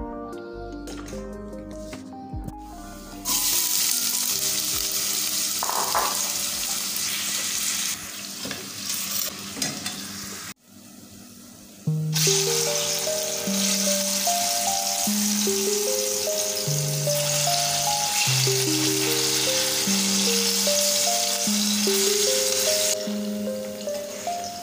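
Sliced plantain frying in hot vegetable oil in a pan, a steady sizzle. It starts a few seconds in, drops out briefly near the middle and then carries on, with background music over it.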